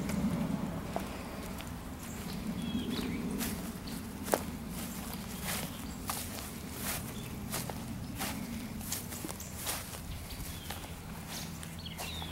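Footsteps on sandy, grassy ground, irregular and a step or two a second, over a steady low electric hum. The hum grows a little stronger near the end, and he takes it for something electric running in the cabin.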